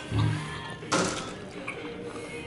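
A short low thud, then a sharp click or knock just under a second later, over faint steady room ambience.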